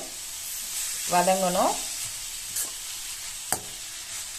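Grated carrot and shallots sizzling in oil in a stainless steel pan as they are stir-fried with a metal perforated spoon. The spoon clicks sharply against the pan twice in the second half. A brief voice-like sound about a second in is the loudest moment.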